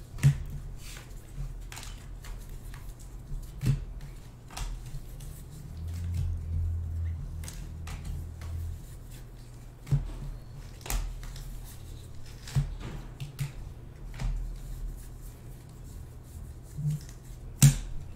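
2020 Bowman baseball cards being handled and flipped through by hand, giving irregular sharp clicks and snaps of card stock, over a steady low hum.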